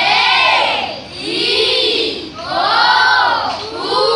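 A group of children shouting together in long cries, each rising and then falling in pitch, repeated about three times with a short gap between.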